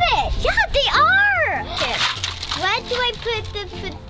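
Young girls' voices, excited and high-pitched, the pitch swooping up and down.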